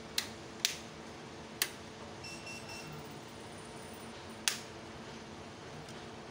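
Four sharp clicks of rocker switches on the load panel as the heater loads on a homemade pure-sine-wave inverter are switched, over the steady hum of the inverter and its cooling fan. A short faint high whistle sounds about midway.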